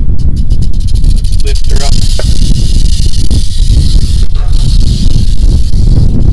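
Prairie rattlesnake rattling: a dry, continuous high buzz that starts about two seconds in and goes on to near the end, with a brief break midway. This is the rattlesnake's defensive warning. It is heard over heavy wind noise on the microphone.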